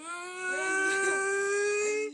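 A child's voice holding one long, high-pitched note for about two seconds, its pitch creeping slightly upward.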